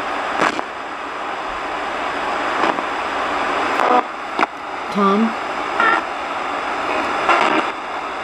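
RadioShack 20-125 portable radio scanning as a ghost box: a steady hiss of static, broken by short clicks and brief chopped fragments of broadcast voices as it jumps from station to station.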